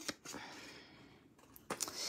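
Scissors cutting small V notches into cardstock, with faint rustle of the paper being handled and a few sharp snips near the end.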